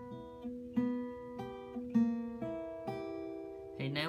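Steel-string acoustic guitar fingerpicked slowly: a broken-chord pattern played one note at a time on the top three strings, about three notes a second, each note left ringing into the next.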